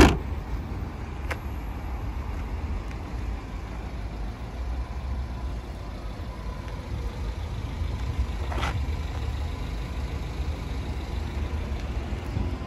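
A car's hatchback tailgate shut with a single loud thump, followed by a steady low background rumble.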